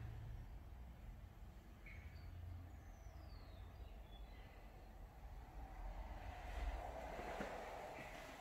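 Faint low rumble of handling noise as a handheld camera is carried through an empty room, with a few faint high chirps about two to three seconds in.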